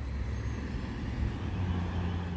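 Wind buffeting the microphone outdoors: an uneven low rumble.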